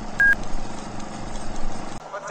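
A single short electronic beep, one high tone about a quarter-second in, over steady background noise with a low hum.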